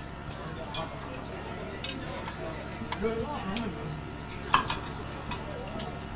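Scattered light clicks and knocks of objects being handled, over a steady low hum, with faint voices behind. The sharpest click comes about four and a half seconds in.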